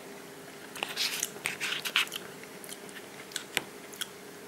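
A person eating a microwaved beef stew and mashed potato meal by the spoonful: a run of close, wet chewing and mouth noises from about a second in, followed by a few sharp separate clicks.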